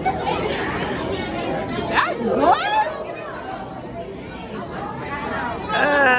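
Chatter of several overlapping voices, with one voice rising sharply in pitch about two seconds in.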